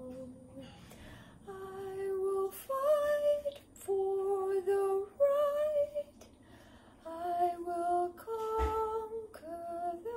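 A woman singing a slow tune without words, one steady held note at a time, about seven notes with short breaks between them.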